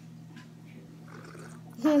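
Faint sipping from a glass of chocolate milk over a steady low hum, then a voice starts speaking loudly just before the end.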